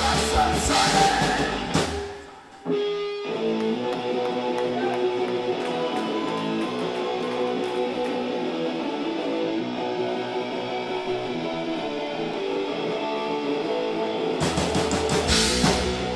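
Punk band playing live with electric guitars, bass and drums. The full band breaks off about two seconds in. After a brief gap an electric guitar plays on its own with ringing, sustained notes, and near the end the drums and bass crash back in.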